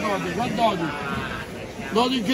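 Voices of people talking among the stalls of a busy fish market.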